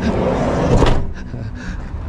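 A camper van's automatic sliding side door rolling shut for just under a second and latching with a sharp clunk.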